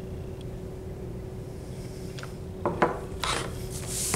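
Brief rubbing and rustling close to the microphone, a few short scrapes in the second half, over a steady faint room hum.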